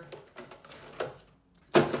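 Tubes and bottles of sealant and threadlocker being handled in an open metal toolbox drawer: a few light knocks, then one sharper knock near the end.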